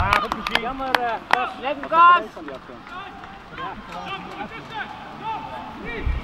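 Voices calling and shouting across a football pitch in short bursts, with a loud shout about two seconds in. A few sharp clicks come in the first second and a half.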